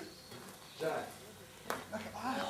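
A brief burst of a person's voice just under a second in, and a single sharp click near the end.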